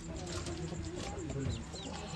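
Chicks peeping, with two short, high, falling peeps in the second half, over low cooing bird calls.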